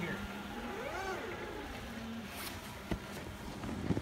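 Hyundai 18BT-9 battery-electric forklift driving across a snowy yard: a steady low electric hum over a low rumble that fades a little past two seconds in. A single sharp click comes just before three seconds.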